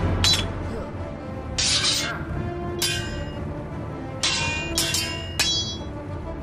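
Sword blades clashing in a fight: several sharp metallic clangs that ring on briefly, over background music.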